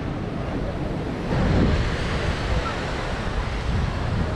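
Outdoor seaside rush of wind and surf, with no distinct tones. It swells for about a second a little over a second in.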